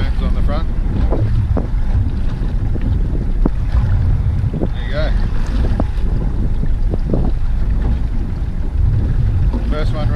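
Wind buffeting the microphone aboard a small boat at sea: a steady low rumble, with a few light clicks scattered through it.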